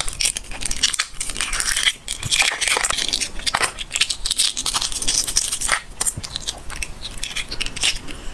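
Shell of a cooked fertilized chicken egg (活珠子, a balut-like egg) being cracked and peeled off by fingers close to the microphone: a dense run of small cracks, clicks and crinkles as the shell breaks away from the membrane.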